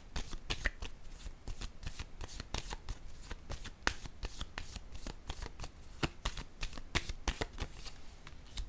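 A deck of tarot cards being shuffled by hand: a quick, continuous run of crisp card flicks and slaps.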